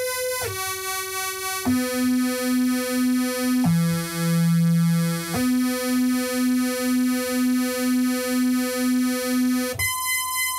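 Moog Rogue analogue synthesizer playing a series of held notes on its two oscillators, stepping down to a low note and back up. The oscillators beat against each other in a slow, even pulsing: a slight intonation drift, the top note tuned while lower notes drift out of tune.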